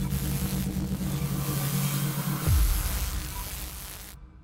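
Intro logo sting: a dense rumbling, hissing drone with a steady low hum. About two and a half seconds in, the hum swoops down in pitch and swells, then the sound fades away near the end.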